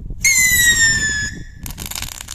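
Firework rocket whistling in flight: one loud, high whistle with overtones, sliding slightly down in pitch for about a second. It is followed near the end by a rapid run of small crackling bursts.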